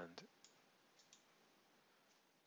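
A few faint computer mouse clicks, in two quick pairs, over near-silent room tone.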